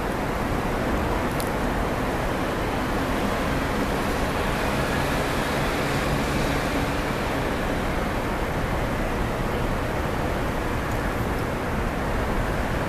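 Steady rumble and hiss of distant road traffic, with a faint low hum rising out of it for a few seconds midway.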